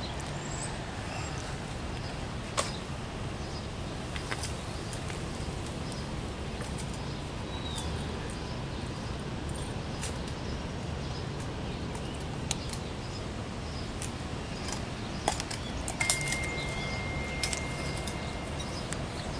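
Quiet outdoor background: a steady low hum with scattered faint clicks and light taps, a single short chirp partway through, and a thin steady tone about two seconds before the end.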